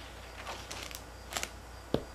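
Loose paper book pages rustling as one is turned over by hand, with a short sharp tap near the end.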